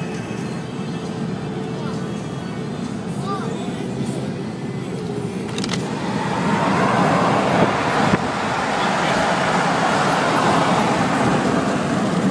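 Road and wind noise inside a moving car, rising to a louder, steady rush about halfway through.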